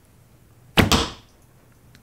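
A traditional bow shot: the string is released and the arrow strikes a foam target a split second later, two sharp cracks close together about 0.8 s in, followed by a short ringing twang that dies away within half a second.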